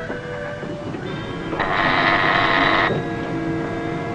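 Ship's telephone buzzing once for just over a second, about a second and a half in, calling the operating team. Sustained background music chords run underneath.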